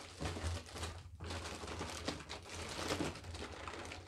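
Plastic parts bags crinkling and rustling as hands rummage through a kit box, a dense run of small crackles with a brief lull about a second in.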